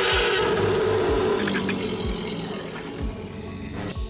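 The Predator creature's long, harsh roar, fading slowly and cut off just before the end, over background music with a low, regular beat.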